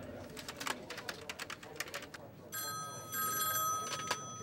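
Keys clacking on a computer keyboard in quick, irregular strokes. About two and a half seconds in, a desk telephone starts ringing with a steady ring.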